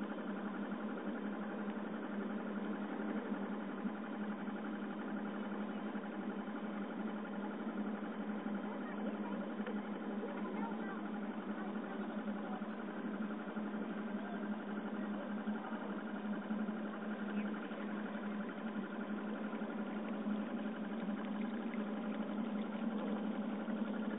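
A boat engine running steadily, a constant even hum that does not change in pitch.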